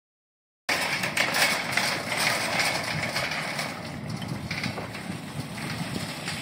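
Metal shopping cart rolling over asphalt, its wheels rumbling and the wire basket rattling. It starts suddenly under a second in, is loudest for the first few seconds, then eases off.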